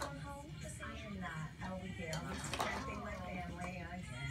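Indistinct voices talking without clear words, with a couple of short clicks.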